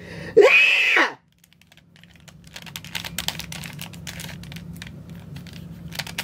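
A short yell, then a Rubik's Cube being twisted quickly by hand: a dense run of small plastic clicks and rattles from its turning layers.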